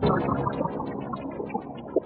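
Fragment additive spectral software synthesizer playing a Renoise-sequenced pattern, with delay and reverb. A dense chord swells in at the start under a stream of short, high, repeated notes, while a held tone slowly falls in pitch.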